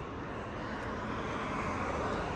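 Road traffic noise from a vehicle going by on the road, a steady rush that slowly grows louder.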